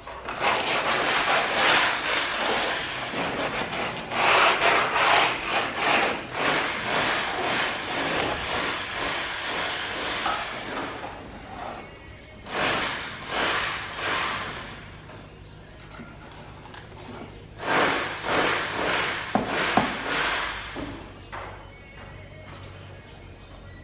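A plastering float scraping and rubbing over fresh cement render in long runs of quick strokes, stopping about halfway through and coming back in two shorter spells near the end.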